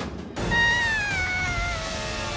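Cartoon Quetzalcoatlus (pterosaur) cry: one long call that starts about half a second in and falls slowly in pitch.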